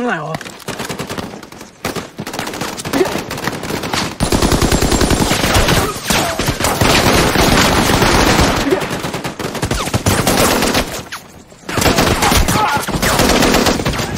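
Heavy gunfire from many guns in a battle scene. Scattered shots for the first four seconds give way to dense, rapid, continuous firing for about seven seconds, which breaks briefly and then resumes near the end.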